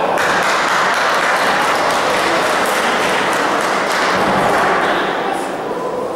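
Boxing crowd cheering and shouting, swelling suddenly as the fighters exchange punches and easing off about five seconds in, with scattered sharp thuds through it.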